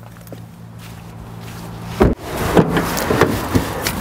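A person climbing out of a small car's seat: coat and clothing rustling and shuffling, with a sharp knock about halfway through, then more rustling and smaller knocks as he moves about the open doorway.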